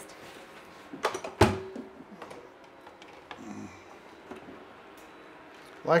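Cookware being handled on a kitchen counter: a few knocks about a second in, the loudest with a short metallic ring, then small scattered clicks.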